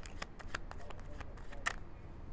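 A deck of tarot cards being shuffled by hand: a quick, irregular run of card flicks and snaps.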